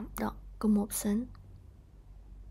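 A woman speaking a few soft words, then a pause with only quiet room background.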